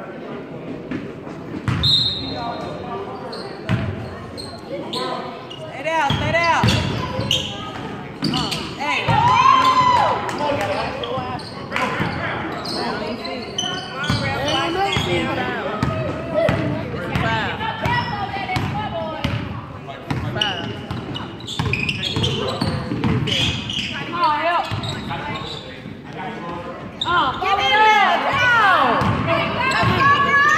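Basketball game on a hardwood gym floor: the ball bouncing repeatedly as it is dribbled, with sharp footfalls and indistinct shouting from players and spectators, all echoing in a large hall. The play gets louder near the end.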